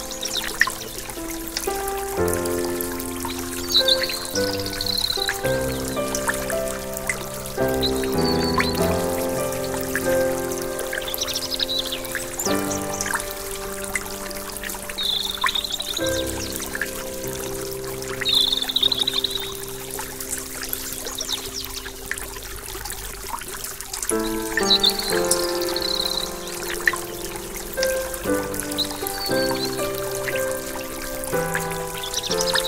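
Slow, calm instrumental music of held notes over the steady rush of a small stream running over rocks.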